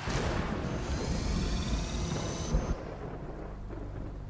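Storm sound effect: a rolling rumble of thunder under a rushing noise, easing off about two and a half seconds in.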